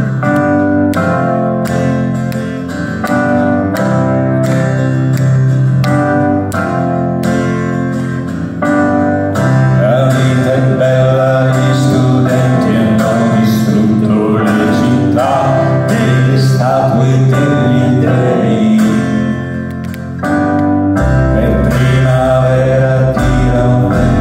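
Live band music led by acoustic guitar, with singing. A deep bass comes in about three seconds before the end.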